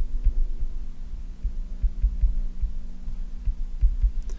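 Irregular low thuds from a stylus writing on a tablet, over a steady low electrical hum.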